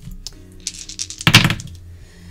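Small hard dice clicking and clattering on a table as zodiac dice are rolled, with one loud clatter about a second and a half in. Soft background music runs underneath.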